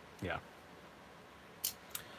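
A short, crisp click about one and a half seconds in, with a fainter tick just after, over quiet room tone.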